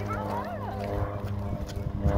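Small propeller plane flying low overhead: a steady engine drone, with short voice-like calls over it in the first second.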